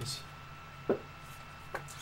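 Two short sharp taps, the louder one about a second in, from trading cards and their plastic holders being handled on a tabletop, over a faint steady high tone.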